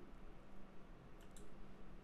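Two faint clicks of a computer mouse a little past halfway, over quiet room tone.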